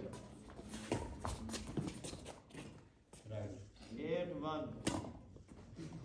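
Badminton rally: a series of sharp racket hits on the shuttlecock, mixed with players' footsteps on the paved court. A player calls out in a drawn-out voice from about three seconds in to near the end.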